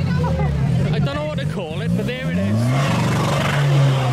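Car engine revving at the start line of a street drag race: a few rising pulls of the revs, then held steady at high revs near the end, ready for the launch. Crowd voices and shouts throughout.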